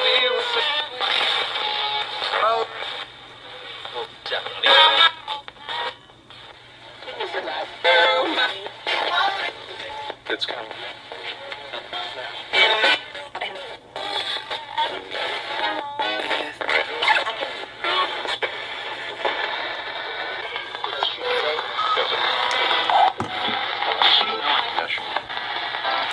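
Handheld RadioShack digital radio sweeping rapidly through FM stations as a spirit box, giving chopped snatches of talk and music broken every fraction of a second, with a thin, band-limited sound.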